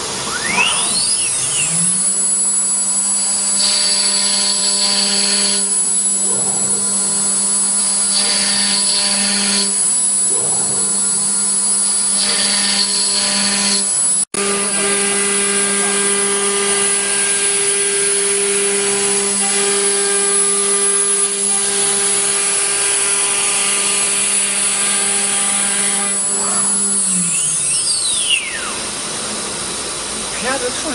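ATC CNC router spindle spinning up in the first second and a half, then running with a steady high whine as it carves grooves into an MDF door panel. A few bursts of hissier cutting noise come in the first half. The spindle winds down a couple of seconds before the end.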